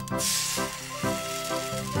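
Egg frying in a hot pan: a sizzle that starts sharply as the egg drops in and fades over the next second or two, over background music with a steady beat.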